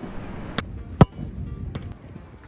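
A hard-struck football hits the goalpost with a single sharp thud about a second in. A fainter knock comes about half a second earlier.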